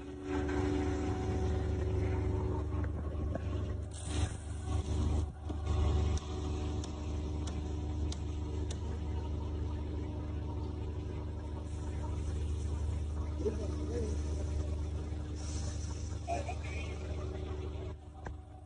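A boat's engine running steadily: a deep rumble with a steady hum above it, over wind and water noise. A few light clicks come in the first half.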